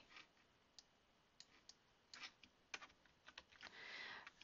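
Near silence broken by faint, irregular clicks of a computer keyboard and mouse, about ten short taps spread over the few seconds.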